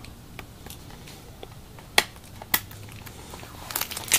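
Fingernail picking at a stubborn anti-theft sticker on a steelbook's packaging: faint scattered ticks and scratches, with two sharper clicks about two seconds in and half a second apart.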